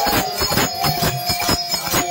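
A harmonium holds a chord over a quick, even beat of hand claps with a jingling ring, about five strokes a second, in a kirtan.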